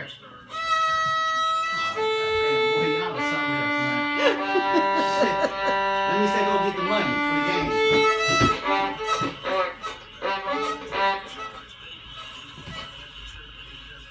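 A student violinist bowing a slow run of single held notes, each about a second long, one after another. Over the last few seconds the playing thins out into shorter, quieter strokes.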